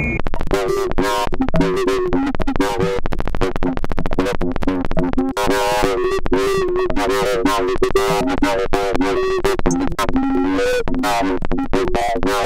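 Glitchy electronic audio resampled from Ableton's Roar distortion device fed back into itself, playing as a short loop that is moved through the recording. Dense, rapid clicks run over wavering, warbling pitched tones, and the sound drops out briefly twice.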